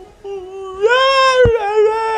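A high-pitched, drawn-out wailing cry in a dubbed cartoon voice, swelling louder about a second in, with one short click midway.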